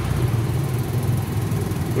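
Cireng (tapioca fritters) deep-frying in a wok of hot oil, with an even high sizzle over a steady low rumble.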